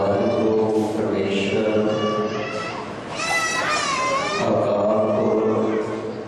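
A man's voice chants a prayer in long, drawn-out notes. In the middle, a higher voice briefly rises and falls over it.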